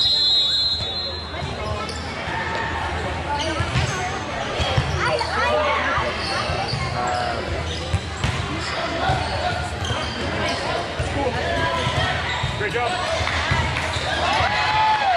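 A referee's whistle blows briefly at the start. A volleyball rally follows in a large echoing gym: the ball is struck a few times, sharpest about five and eight seconds in, under players' calls and spectators' voices.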